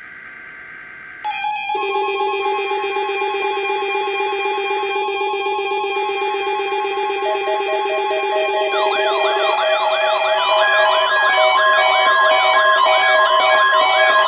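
Several NOAA weather alert radios sounding their alarms together as they pick up a SAME-coded Required Weekly Test. After a quiet first second, steady tones come in, a pulsing beep joins about seven seconds in, and warbling siren-like tones rise and fall from about nine seconds, building into a loud overlapping chorus.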